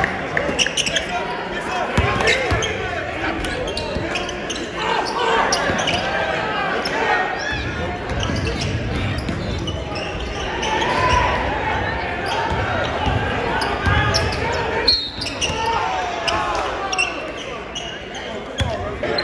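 Live high school basketball game sound in a large gym: a basketball bouncing on the hardwood court with short knocks amid continuous shouting and chatter from players and the crowd, with one sharp thud about fifteen seconds in.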